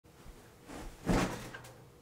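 A person dropping into a leather office chair: brief rustling, then one soft thump about a second in that fades quickly.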